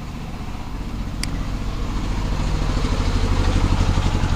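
A motor engine running with a low, fast pulse, growing steadily louder toward the end. A single sharp click sounds about a second in.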